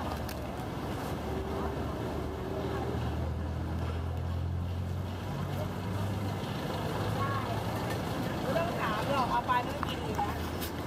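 Street traffic: a vehicle engine's low hum swells close by in the middle and then eases, over a steady background of passing traffic. Voices come in near the end.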